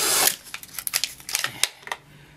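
Stiff plastic packaging being worked open to pop out a jumbo marker eyeliner: a loud crackling rustle at the start, then a string of sharp clicks and crackles.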